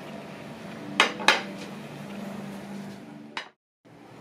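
Dishes clinking as breakfast plates are set down on a table: two sharp clinks about a second in and another near the end, just before the sound briefly cuts out.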